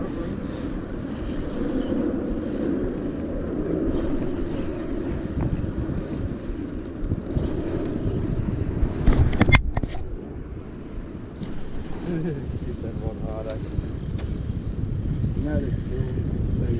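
Steady wind noise on the microphone while a spinning reel is cranked against a hooked bream on a bent rod, with one sharp knock about nine and a half seconds in.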